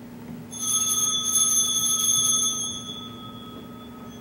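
Altar bells shaken at the elevation of the chalice after the consecration: a fast, jingling ring that starts about half a second in, holds for about two seconds and then dies away.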